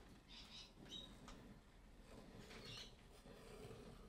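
Near silence, with a few faint, brief scratchy rustles.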